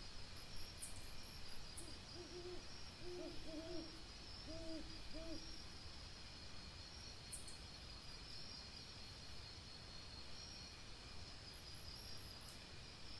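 An owl hooting at night: a run of six or seven short, low hoots between about two and five and a half seconds in, over a steady high chirring of night insects.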